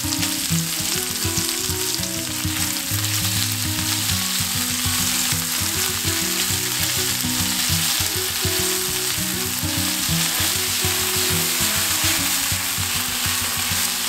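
Sliced pork belly, leek and kimchi sizzling steadily in a frying pan while chopsticks stir them around.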